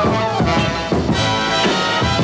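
Orchestra playing a lively swing-style music-hall number, with brass over a steady drum beat.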